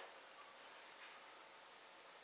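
Faint, soft squishing of raw turkey mince being pressed and shaped into a ball by hand, over low room noise.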